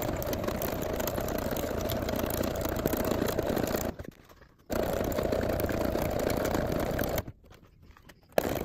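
Computerized sewing machine stitching a straight line through a paper-napkin-and-fabric envelope, running steadily in two spells and stopping briefly about four seconds in and again about a second before the end while the work is turned.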